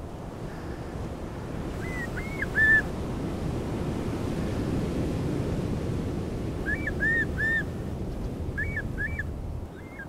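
A shorebird calling in short whistled notes, each rising and falling, in quick groups of two or three. The calls come about two seconds in, again about seven seconds in, and near the end, over a steady wash of shallow water and wind.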